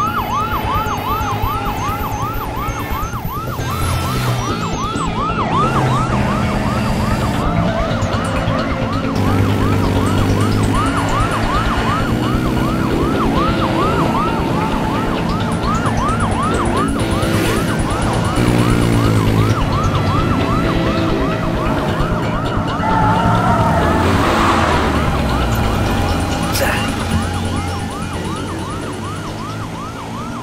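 Police vehicle siren in a fast yelp, its pitch rising and falling about two to three times a second without a break.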